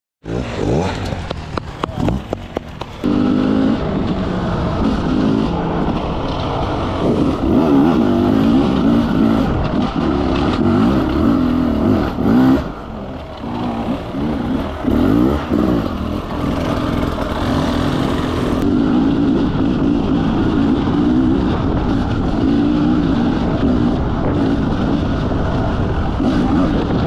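Enduro motorcycle engine running under way, its pitch rising and falling over and over as the throttle is opened and closed, with a brief drop near the middle.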